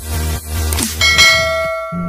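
Electronic intro music with a beat, then about a second in a bright bell chime rings out and slowly fades: the notification-bell sound effect of a subscribe-button animation.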